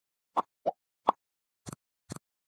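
Four short cartoon 'pop' sound effects in quick succession, the kind that mark graphics popping onto an animated end screen; the third pop is the loudest.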